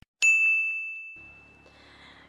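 A single bell-like ding, an edited sound effect on a title card. It is struck once just after the start and rings as one clear high tone that fades away over about a second and a half.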